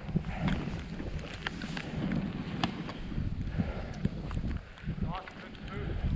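Skis running through fresh powder snow, with wind rumbling on the microphone and scattered light knocks from skis and poles. A voice calls out briefly about five seconds in.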